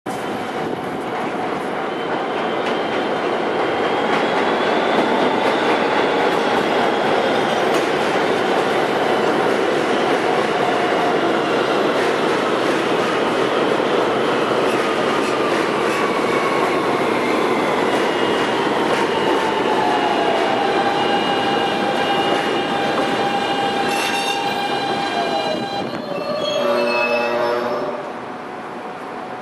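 R160B subway train running into an elevated station: a steady rumble of wheels on rail with a whine from the electric traction motors that falls in pitch as the train slows. Near the end there is a short series of tones stepping down in pitch as it comes to a stop.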